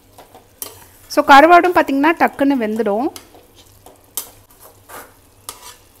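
A perforated steel spatula stirring thick prawn masala in a steel kadai, clinking and scraping against the pan over a low sizzle. A voice sings a short phrase, 'let's cook', in the first half. This is the loudest sound.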